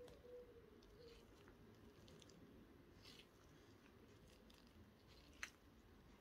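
Near silence: room tone with a few faint, short ticks, the sharpest about five and a half seconds in.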